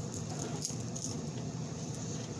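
Faint handling sounds from a toiletry bag: small items rattling and a few light clicks as the bag is packed.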